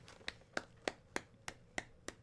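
One person clapping slowly and steadily, about three claps a second.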